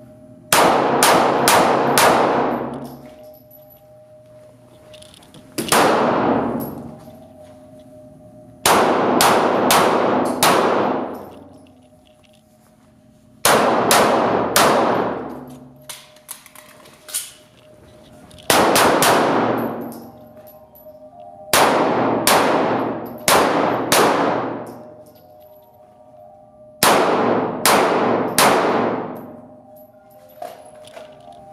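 Pistol fired in quick strings of three to five shots, about seven strings a few seconds apart. Each shot rings on in the echo of an indoor range.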